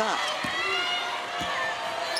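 A basketball being dribbled on a hardwood court, two bounces about a second apart, over the steady murmur of an arena crowd.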